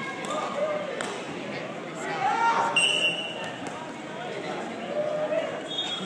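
Wrestlers grappling on a gym mat: irregular thuds and two brief high shoe squeaks, about three seconds in and near the end, over indistinct voices echoing in a large gymnasium.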